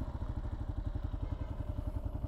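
Kawasaki KLR650's single-cylinder four-stroke engine idling steadily with the motorcycle at a standstill, an even low pulsing of roughly eleven beats a second.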